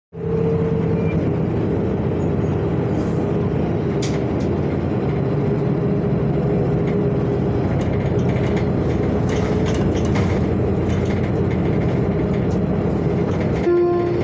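A city transit bus running, heard from inside the cabin: a steady engine and drivetrain hum with a held mid-pitched whine.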